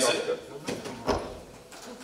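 A man's voice over a handheld microphone, trailing off into a short pause with a few soft knocks.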